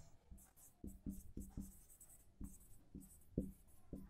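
Marker pen writing a word on a whiteboard: faint, short, irregular strokes.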